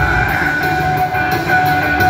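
Live rock band playing loud through a concert PA in a quieter section: sustained high held tones over steady hi-hat ticks, with the bass and kick drum dropped out.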